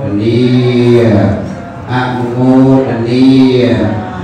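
A man chanting Buddhist Pali verses into a microphone. He sings in long, drawn-out held notes in two phrases, with a short breath between them a little after the first second.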